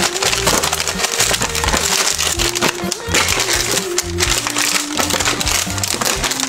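Plastic snack packets crinkling and rustling as a hand sorts through them on a shelf, with a steady crackle throughout. Background music with a melody and a bass line plays underneath.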